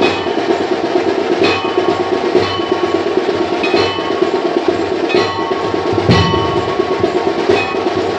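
Temple festival percussion: continuous drumming with a ringing metal bell or gong struck every second or so, each stroke leaving a bright ringing tone.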